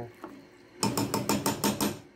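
A stirring utensil clicking and scraping against the skillet in a quick run of about seven strokes in a second, starting near the middle, as shredded cheese is mixed into the thick pasta.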